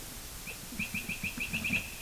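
A bird calling a quick, even series of short high chirps, about six or seven a second, beginning about half a second in.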